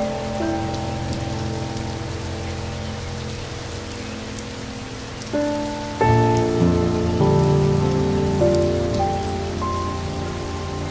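Steady rain falling with scattered drop ticks, mixed with slow, soft instrumental music of held notes and chords. New, louder notes come in a little after five seconds and again about six seconds in.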